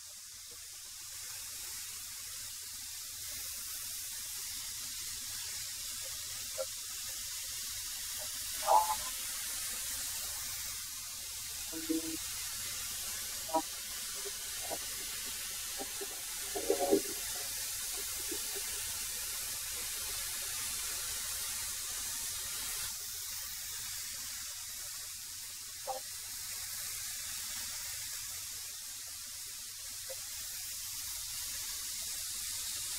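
A 13-inch benchtop thickness planer running with its dust-collection hose attached, heard as a steady hiss while boards are fed through. Several short knocks come from the boards being handled.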